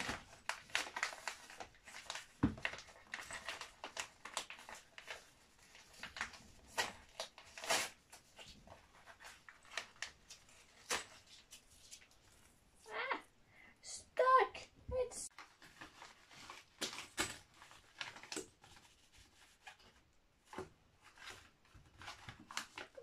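Paper and cardboard rustling with many small clicks and knocks as the parts of a flat-pack cube shelf and a paper packet of its fittings are handled. About two-thirds of the way through comes a brief high whine that wavers up and down, the loudest sound in the stretch.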